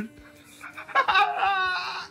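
Laughter starting about a second in: a high-pitched, wavering laugh.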